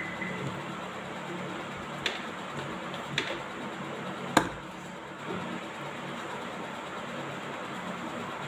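Plastic lunch-box containers being handled while a tiffin is packed: a few light clicks and knocks, the sharpest about four seconds in, over a steady low hum.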